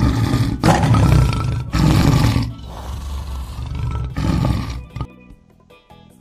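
A large animal's loud, harsh calls in about five rough bursts, over background music; they stop about a second before the end, leaving only the music.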